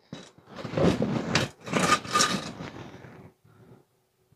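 Scraping against a steel car frame rail in two long strokes, then it stops, as paint is cleaned back to bare metal for welding.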